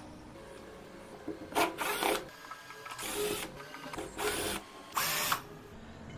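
Cordless drill-driver with a Phillips bit running in several short bursts, each under half a second, backing out the screws that hold a mixer motor's metal end plate.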